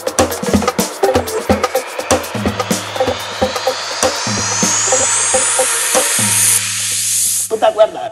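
Tech house track in a build-up: clicky percussion and a pulsing bass line under a rising sweep that climbs steadily higher, then cuts off near the end into a brief, quieter gap.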